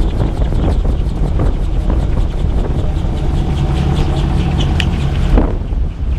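AutoGyro MTOsport gyroplane's engine and pusher propeller running steadily with a low, even hum. The sound changes abruptly about five seconds in.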